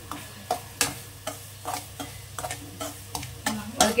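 A slotted steel spoon stirring dry semolina (rava) in an aluminium kadai, roasting it for upma: the spoon scrapes through the grains and clicks lightly against the pan bottom at irregular intervals.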